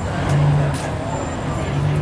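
A low steady rumble with two brief louder low tones, under faint background voices.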